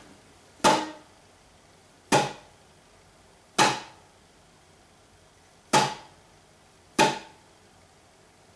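Venezuelan cuatro played with the descending frenado: five muted downward strums, the index finger striking all four strings and the palm damping them at once, so each is a short percussive chop with no ringing chord. The strokes come about one to two seconds apart.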